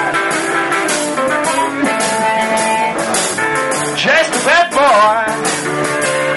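Live blues band playing: electric guitar carrying the tune between sung lines, with bent notes about four seconds in, over bass and drums keeping a steady beat.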